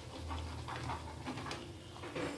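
Malpua batter frying in hot oil in a nonstick pan, sizzling in short irregular sputters as a spatula pushes and lifts it, over a steady low hum.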